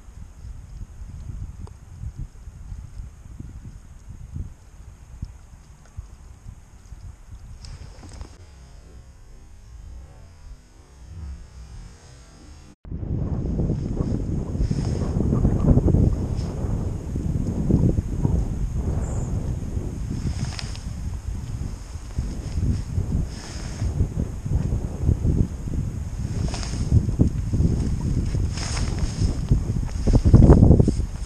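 Wind buffeting the camera microphone in gusts. It is moderate at first, then much louder and rougher after a sudden cut about 13 seconds in.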